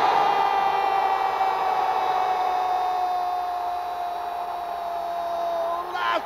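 A Brazilian TV football commentator's long drawn-out goal cry, 'Gooool', held as one unbroken note that sags slightly in pitch before breaking off near the end, over stadium crowd noise.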